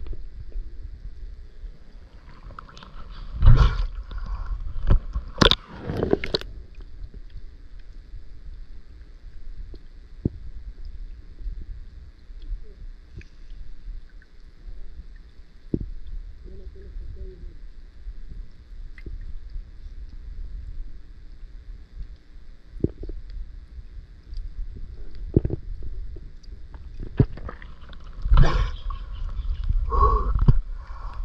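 Underwater sound from a camera held in a river: a steady low rumble with scattered knocks and bubbling gurgles, and a louder splashing gurgle near the end as the camera breaks the surface.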